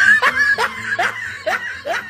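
A person snickering: a run of short, rising laughs, about three a second, getting quieter toward the end.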